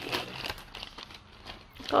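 Paper crinkling and rustling in irregular bursts as hands rummage in a paper-lined cardboard food bucket and pull out a brown paper bag.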